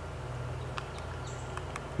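Quiet outdoor background: a steady low rumble with a couple of faint ticks. The solar gate opener makes no sound; it is not responding despite a new battery.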